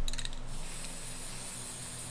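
Aerosol spray-paint can spraying in a steady hiss, after a few quick clicks at the start.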